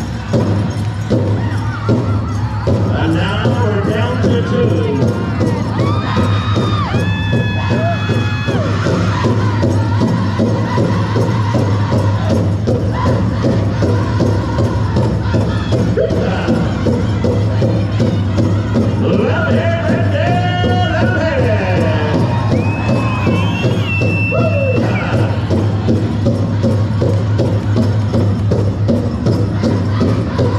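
Powwow drum group playing a dance song: big drum struck in a steady beat under group singing. High held calls rise over it twice, about seven and about twenty seconds in, over a crowd in a large hall.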